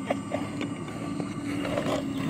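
Radio-controlled model airplane in flight, its engine a steady distant drone that shifts slightly in pitch.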